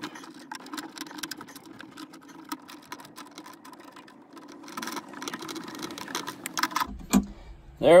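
Small metal clicks and clinks of a wrench and battery terminal hardware as adapters and ring terminals are fitted onto a battery's posts. The clicking comes thickest about five seconds in, over a steady low hum.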